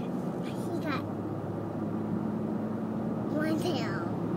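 Steady road and engine noise heard from inside a moving car's cabin.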